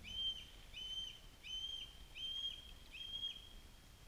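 A bird calling: five clear, even whistled notes about two thirds of a second apart, each holding one high pitch.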